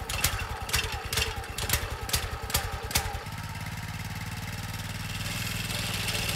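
Plate compactor's small petrol engine just after being started, running unevenly with irregular knocks for about three seconds, then settling into a steady idle.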